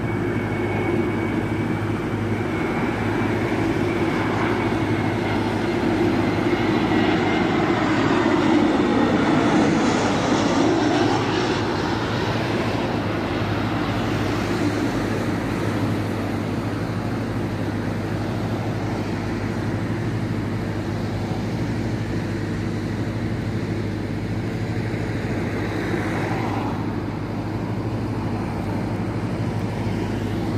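Jet airliner passing low on approach to land: its engine whine falls in pitch as the noise swells to a peak about eight to ten seconds in, then slowly fades. A steady low hum runs underneath.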